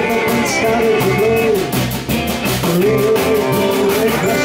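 Live blues-rock band playing: electric guitars over bass and a drum kit, with a steady, even cymbal beat.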